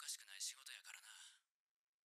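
Faint, thin-sounding speech that stops about a second and a half in.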